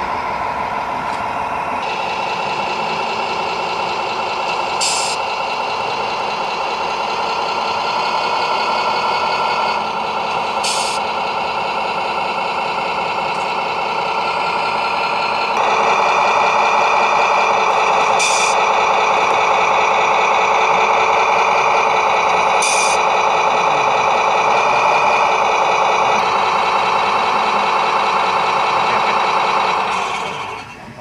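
Simulated diesel truck-engine sound from the electronic sound modules of remote-controlled scale trucks, running steadily and getting louder about halfway through. Four short hisses like air-brake releases are spread through it.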